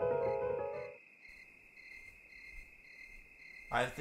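Background music that stops about a second in, leaving a steady high chirping of crickets with regular pulses about three times a second. A man's voice starts near the end.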